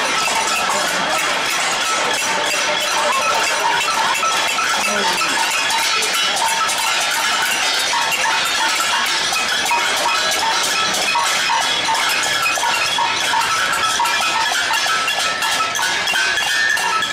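Street protest crowd noise: a steady din of many voices mixed with continuous metallic clanging and clinking, like pots and pans being banged.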